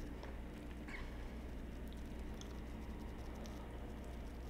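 Faint, light fingertip tapping on facial skin during a lymphatic-drainage face massage: soft scattered ticks over a steady low room hum.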